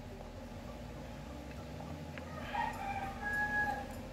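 Faint rooster crow: one drawn-out call starting about two and a half seconds in, over quiet room tone.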